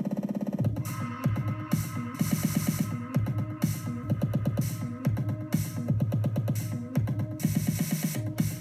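Electronic dance track playing from DJ software with a filter roll. For about the first half second a short slice of the beat repeats rapidly with its highs filtered off, then the full beat with its kick drum carries on.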